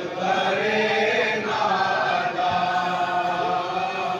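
A group of men chanting a noha, a Shia mourning lament, in unison with long held notes. A lead reciter sings into a microphone, so the chant is amplified.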